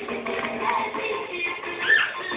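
Dangdut song playing, a female voice singing over the band, with a brief loud high note near the end. The sound is dull, with its top end cut off.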